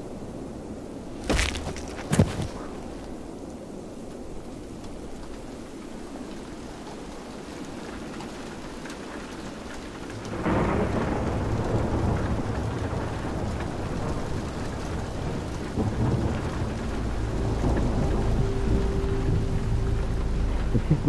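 Two sharp impacts about a second apart, large hailstones striking. About halfway through, a sudden heavy hailstorm sets in with a dense rumbling roar of thunder and pelting ice. A low steady held tone joins near the end.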